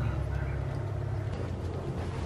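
Steady low hum, with faint rustling as a towel is rubbed over a newborn goat kid.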